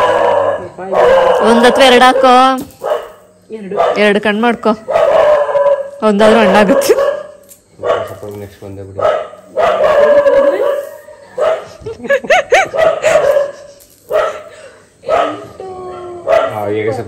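Several people talking loudly and excitedly, their voices rising and falling in pitch, in short outbursts with brief pauses between them.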